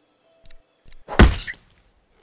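A cartoon impact sound effect: one heavy thud about a second in, led by two faint clicks.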